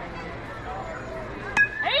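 A single sharp metallic ping of a metal youth baseball bat striking the ball, ringing briefly, about one and a half seconds in, over a background of outdoor voices and murmur.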